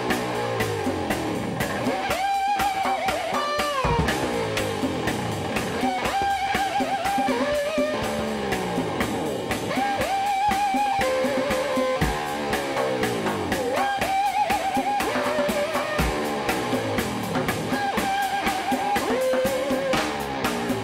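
Live band playing instrumental music: a guitar riff of a held, wavering high note followed by falling slides, repeating about every four seconds over a fast, steady drum beat.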